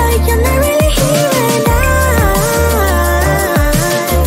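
Background music: a track with a deep, pulsing bass and drum hits under a wavering lead melody.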